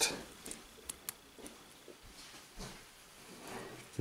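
A few faint, short metal clicks as small snap-ring pliers work in the access slot of a steel Craftsman ratcheting adapter, trying to grip its retention ring, over low room tone.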